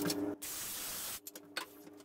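Circular saw cutting through a 2x4 stud: a steady rushing noise for nearly a second that starts and stops abruptly, followed by a quieter stretch.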